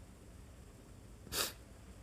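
A man's single short, sharp breath noise into the microphone, about one and a half seconds in, over faint hiss.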